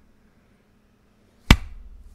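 A single sharp knock about one and a half seconds in, followed by a low rumble that dies away. Before it there is only quiet room tone.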